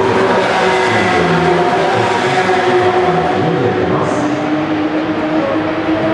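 Porsche 911 GT3 Cup race cars' flat-six engines running on the circuit. The engine note is steady and its pitch drifts slowly up and down.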